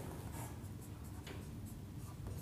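A marker writing on a whiteboard: faint, short scratching strokes of the felt tip.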